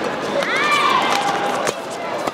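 Badminton doubles rally: sharp racket hits on the shuttlecock, with the strongest near the end, and court shoes squealing on the floor, one squeal rising and then holding about half a second in.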